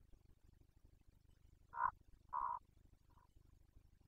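Two short, harsh animal calls about half a second apart, a little under two seconds in, then a fainter third call about a second later, over a low steady background hum.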